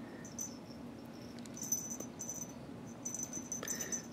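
Small bell inside a cat's toy mouse on a string jingling faintly in short, irregular bursts as a cat bats and paws at the toy.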